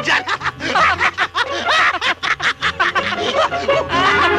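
A man laughing hard in quick repeated bursts, over background music.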